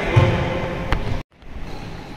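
Quiet sports-hall ambience with a faint voice early on and a single sharp click about a second in, then a sudden brief dropout to silence at an edit.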